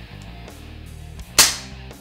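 WE TT33 gas blowback airsoft pistol firing a single shot about one and a half seconds in, a sharp report with a short ring after it.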